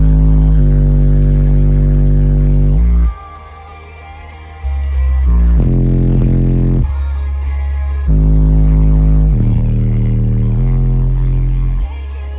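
Bass-heavy electronic music played loud on a car audio system, heard from inside the cabin, with A-pillar tweeters. Long held bass notes change pitch every second or two, and the level drops for a second or so about three seconds in before coming back up.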